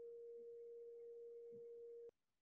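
Faint steady pure tone at a single mid pitch, with no other sound, cutting off suddenly right at the end.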